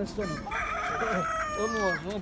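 A rooster crowing once: a long call that starts about half a second in, is held for about a second and a half, and falls away at the end.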